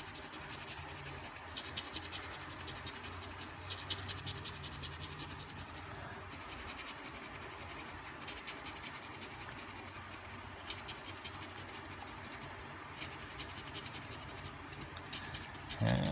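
A coin scratching the coating off a paper scratch-off lottery ticket: quick, continuous back-and-forth scraping, with short pauses about six and thirteen seconds in.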